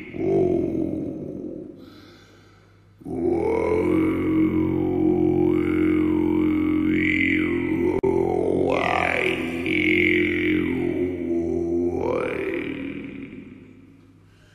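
Didgeridoo playing a steady low drone, its tone swept up and down by the player's mouth shaping. It dies away about two seconds in, starts again a second later, and fades out near the end.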